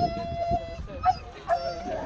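Two-month-old puppy whining in a long, steady high-pitched note. The whine breaks off around the middle, a couple of short sharp yelps come in the gap, and then the whine resumes.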